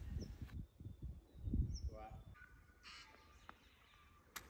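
Quiet outdoor ambience: a low wind rumble on the microphone, with a few faint bird calls and a short faint call about halfway through.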